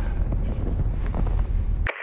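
A steady low rumble with a faint hiss over it, cutting out suddenly near the end.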